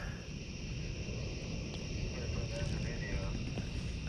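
Steady chorus of night-singing insects with a low rumble beneath it.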